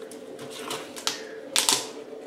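A wire fox terrier puppy eating from a feeding bowl that it pushes about on a vinyl floor: a run of irregular clicks and clatters from the bowl and food, loudest in a quick cluster near the end.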